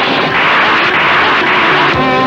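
Loud, steady rushing noise, a dubbed fight-scene sound effect like a jet-engine whoosh.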